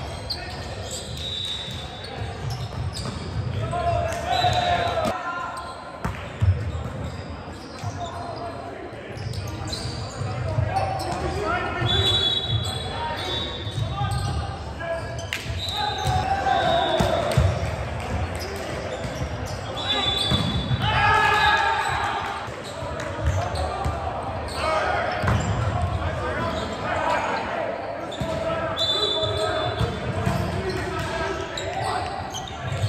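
Indoor volleyball rallies in an echoing gym: players shout and call to each other, the ball is struck with sharp smacks, and sneakers give short high squeaks on the hardwood court.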